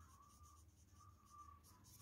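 Faint scratching of a pencil writing on a paper textbook page, in a few short strokes.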